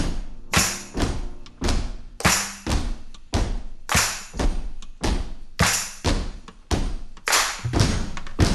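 Drum kit playing a steady beat of heavy hits in a folk-rock song's outro, about two a second, each with a splashy ringing tail. Held notes from the other instruments fade out near the start, leaving mostly the drums.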